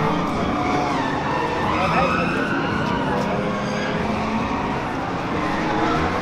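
Drift cars on track: engines running with squealing tyres, a dense noise with wavering tones that stays at a steady level.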